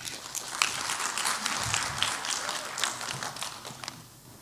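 Audience applause: many people clapping at once, a dense patter that thins out and fades near the end.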